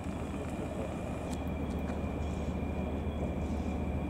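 Steady low rumble of a distant railway locomotive, slowly growing louder, with a thin steady high whine over it.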